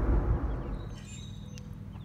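Low rumble inside a moving car. About half a second in it gives way to quieter open air with a few faint high bird peeps.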